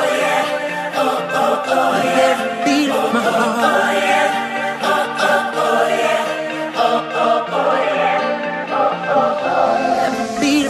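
The outro of a pop song: layered, choir-like vocals chanting "oh, oh, oh, yeah" over the backing music.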